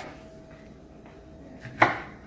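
A kitchen knife chopping bell peppers on a wooden cutting board: one sharp knock of the blade against the board near the end, with a faint steady hum in the quieter stretch before it.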